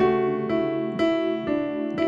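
Electronic keyboard with a piano sound playing an A chord with C# in the bass, new notes struck about every half second, the top note stepping down from F# to E.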